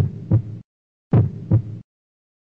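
Heartbeat sound effect: two slow lub-dub beats, each a pair of low thumps, with silence between them.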